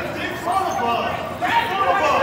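High-pitched voices calling out across a school gymnasium, echoing in the hall.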